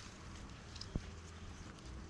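Faint rustling and handling of fresh coconut palm fronds being woven by hand, with a single dull knock about a second in, over a low steady rumble.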